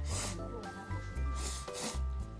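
A person slurping hot ramen noodles, two long slurps: one right at the start and one from about one and a half seconds in. Light background music plays underneath.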